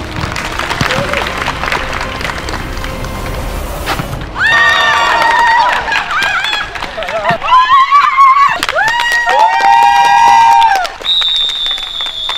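Dodgeball players and onlookers cheering: general crowd noise, then from about four seconds in loud, drawn-out shouts from several voices. It ends with a long whistle blast on one steady pitch near the end.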